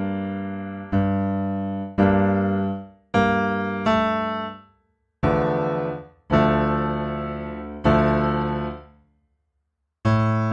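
Arturia Piano V virtual grand piano playing a slow run of block chords, each struck and left to ring out, about one a second. The chords are being tried out in search of a dark chord progression, and the playing stops about a second before the end.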